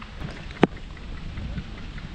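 Low rumbling and crackling noise on a helmet-mounted action camera's microphone, from wind and the wearer's movement. A single sharp click comes about half a second in.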